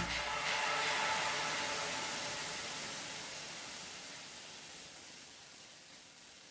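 A soft hiss that fades away slowly and evenly after the music cuts off, with a few faint tones left under it.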